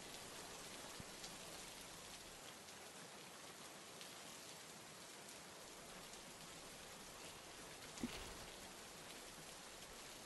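Faint, steady rain falling, with a single brief knock about eight seconds in.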